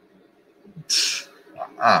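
A man's sharp, breathy exhale about a second in, between laughs, followed near the end by a short voiced 'ah'.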